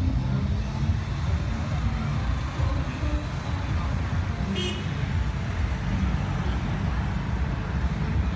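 Busy outdoor street sound: a steady low rumble of traffic mixed with people talking. A short high-pitched sound, like a horn toot, comes just past halfway.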